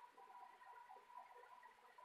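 Near silence: room tone with a faint steady tone.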